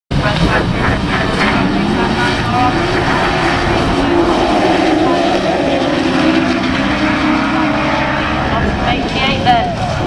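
Several autograss special race cars running together in a pack on a dirt oval, their engines revving up and down and overlapping.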